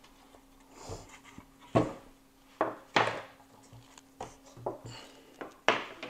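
Yamaha bookshelf speaker cabinets being handled and set down on a wooden table: several knocks and bumps at uneven intervals, with softer rubbing between them.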